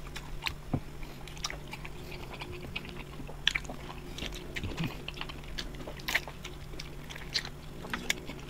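Close-up eating sounds of grilled chicken being bitten, chewed and pulled apart by hand, with irregular short smacks and clicks throughout. A faint steady low hum runs underneath.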